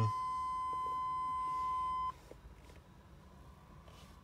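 A GMC Suburban's dash warning buzzer giving one steady, high-pitched electronic beep that cuts off suddenly about two seconds in, leaving faint small clicks.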